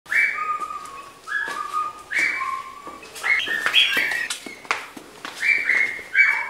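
A person whistling a short tune in clear held notes, mostly in pairs where a higher note steps down to a lower one, with a quicker run of notes partway through.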